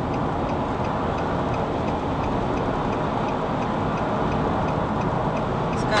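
A car's turn-signal indicator ticking at an even pace inside the cabin, over the steady road and engine noise of highway driving.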